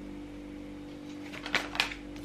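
Tarot cards handled over a steady background music drone: a few short, sharp card flicks and taps about one and a half seconds in, as a card is pulled from the deck and laid down on a tiled countertop.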